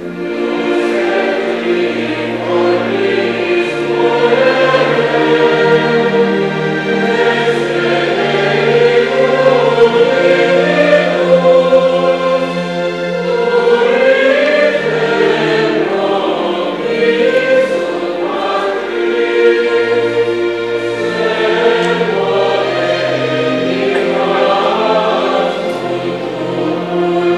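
Choir singing with instrumental accompaniment, its low notes held and changing in steps.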